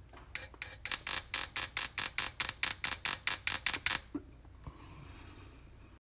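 Eldred cigar lighter spark coil sparking from its high-tension wire to the coil's metal fittings: a regular run of sharp snaps, about four or five a second, stopping about four seconds in. The snaps show the coil is making spark.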